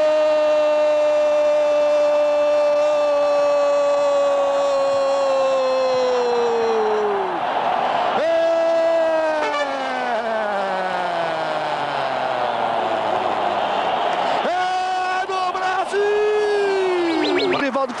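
A Brazilian TV football commentator's drawn-out "Goool!" cry for a goal: one long held shout of about eight seconds, then a second of about six seconds, then shorter calls near the end, each falling in pitch as it runs out of breath. A cheering stadium crowd sounds underneath.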